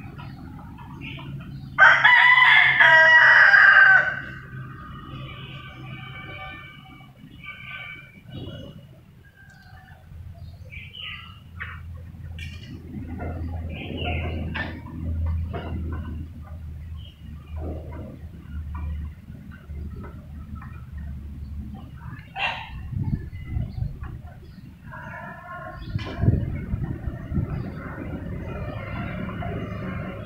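Rooster crowing once, loud, about two seconds in and lasting about two seconds, followed by scattered shorter clucks and calls from chickens, with another run of calls near the end.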